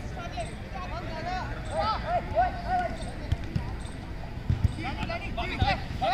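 Football players shouting and calling to each other during play, with several dull thuds of the ball being kicked, the loudest about four and a half seconds in and near the end.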